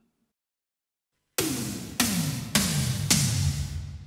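Yamaha Genos Multi Pad playing a SynthToms1 phrase: four electronic synth-tom hits about half a second apart, starting about a second and a half in, each dropping in pitch as it dies away.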